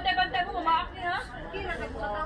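People talking: untranscribed voices chattering, the only sound that stands out.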